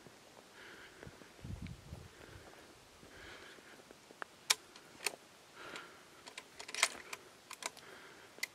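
Quiet outdoor background with a few faint, scattered sharp clicks, most of them in the second half, and a soft low rumble of handling noise about a second and a half in.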